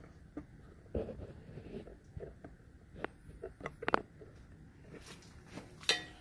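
Handling noise as a camera is picked up and repositioned: light rustling with scattered small clicks and knocks, the sharpest run of clicks about four seconds in.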